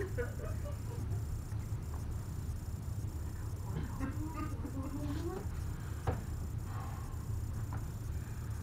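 Quiet stage room tone with a steady low hum, faint wavering vocal sounds around the middle, and a single sharp knock about six seconds in.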